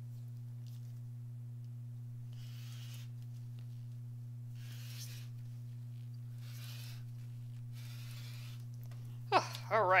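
Rotary cutter slicing through folded cotton fabric along a ruler: four soft strokes about a second and a half apart, over a steady low hum.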